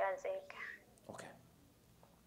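A few quick spoken syllables in the first half second, then a short breathy sound about a second in, then quiet room tone.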